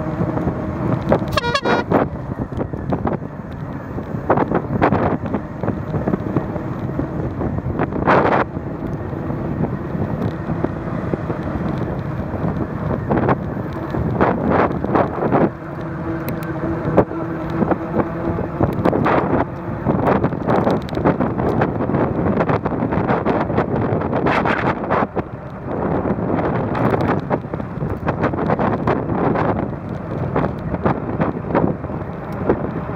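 Riding noise from a bicycle on asphalt: wind buffeting the camera's microphone and tyre rumble, with a steady hum that comes and goes and a few louder gusts.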